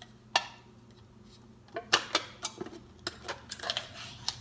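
Fingers handling an opened metal tin of flake pipe tobacco: one sharp click early on, a quiet pause, then a run of small ticks and taps about two seconds in.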